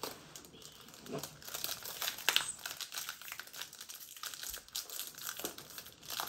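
Foil wrapper of a Pokémon trading-card booster pack crinkling and crackling in the hands as it is worked open, in a quick irregular run of small crackles with the loudest a little past two seconds in.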